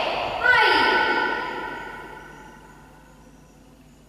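A woman's voice through a handheld microphone: a drawn-out word whose pitch falls, trailing away over about two seconds into quiet room tone.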